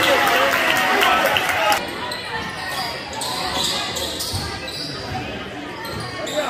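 A basketball bouncing on a hardwood gym floor, with voices around it in a large gym; the overall din drops a little about two seconds in.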